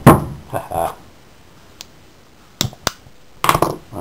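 Sharp clicks of a lighter being struck to light an alcohol burner under a tin-can Stirling engine. There is a loud click at the start, then two quick clicks close together a little past halfway.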